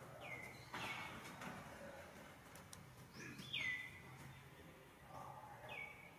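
A bird calling: short whistled notes that slide down in pitch, three clear ones a few seconds apart, with fainter, higher down-sliding calls between, over faint background noise.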